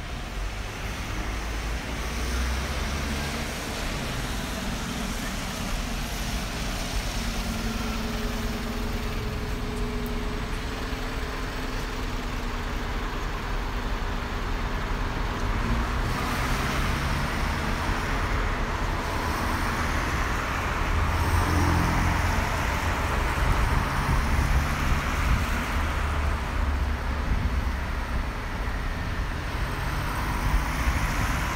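City street traffic: motor vehicles passing, a steady hum of engines and tyre noise that grows louder in the second half.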